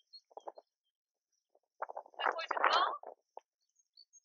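A person's breathy, strained vocal sounds during a ball-toss sit-up: a short faint one about half a second in, then a longer, louder straining exhale in the middle.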